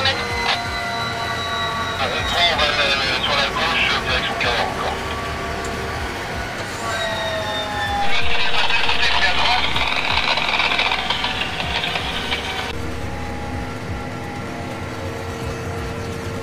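Massey Ferguson 8S tractor heard from inside its cab while driving on the road: a steady engine and drivetrain hum with a whine, a falling pitch glide about seven seconds in, and louder rushing road noise from about eight to thirteen seconds.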